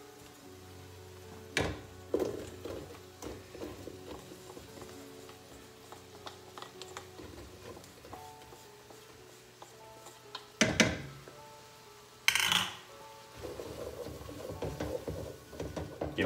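Soft background instrumental music, with a metal spoon knocking and scraping against a stainless steel bowl as mushrooms are tipped into a saucepan. A few sharp clanks, the loudest two a little past halfway, then stirring in the pan near the end.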